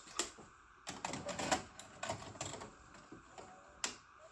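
Irregular run of light mechanical clicks and clacks, busiest about a second in and ending with one sharp click near the end, over a faint steady whine.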